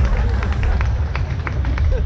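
Scattered audience clapping, single sharp claps several times a second, over a steady low rumble on the microphone.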